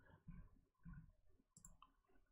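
Near silence with a few faint clicks of a computer mouse.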